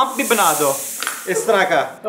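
Men's voices talking, with a high, even hiss in the first second or so.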